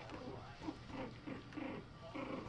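Young puppies, four to five weeks old, making short, low play growls and grunts while they tussle, about five or six in a row.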